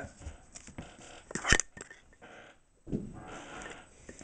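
Trading cards being handled and slid against one another, with scattered soft clicks, one sharp snap about one and a half seconds in, and a longer rustle near the end.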